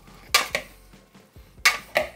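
Metal-headed salad servers scraping against a glass bowl while a strawberry and avocado salad is folded together, twice: once about half a second in and again near the end.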